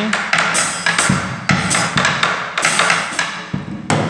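Tambora, the Colombian double-headed cumbia drum, beaten with two wooden sticks in a slow, somewhat uneven cumbia pattern: sharp hits on the drum head mixed with clicks on the wooden shell, about three strikes a second.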